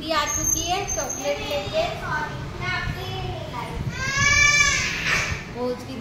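Young children's high-pitched voices, calling out and shouting without clear words, with one long, loud call about four seconds in.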